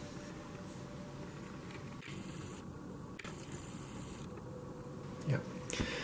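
Low, steady background noise with no distinct event, and a brief spoken word near the end.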